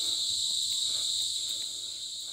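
Steady, high-pitched drone of insects in dry forest, with faint crunching footsteps on dry leaves and loose stones.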